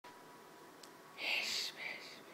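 A person whispering close by: a breathy, unvoiced phrase of about half a second starting a little over a second in, followed by a shorter whispered sound.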